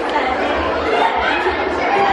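Many voices chattering at once in a large room, with no single speaker standing out.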